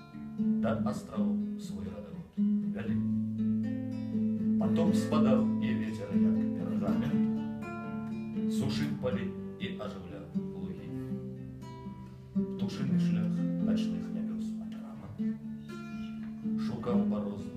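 Acoustic guitar strummed and picked, its chords ringing between repeated strokes.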